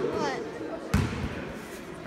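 A basketball bouncing once on a hardwood gym floor about a second in, part of a dribble before a free throw. A voice calls out just before it.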